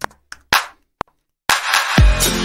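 A few short sharp clicks and a clap-like hit with separate gaps, then about one and a half seconds in a piano house track starts playing loud, with a steady kick beat.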